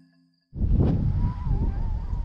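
Struck notes of background music fade out. After about half a second of near silence, wind buffets the microphone in loud, gusty rumbles, with a faint wavering high tone over it.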